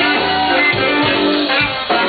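Live blues band playing loud: electric guitar over a drum kit keeping a steady beat.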